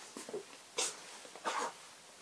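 A few short, faint breaths through the nose close to the microphone, about a second apart.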